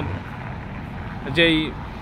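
Steady low rumble of distant city road traffic. A man's voice briefly says one word about one and a half seconds in.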